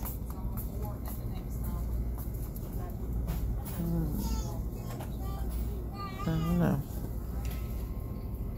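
Store ambience: indistinct background voices with a steady low hum underneath.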